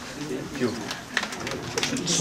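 Indistinct voices talking quietly in a room, with a few scattered sharp clicks in the second half.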